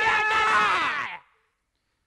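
Two men screaming together at full voice in one long held scream that drops in pitch and cuts off just over a second in.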